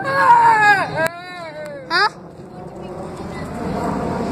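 A child's high-pitched wordless voice, a drawn-out squeal that wavers and falls in pitch, then a short sharp rising squeak about two seconds in.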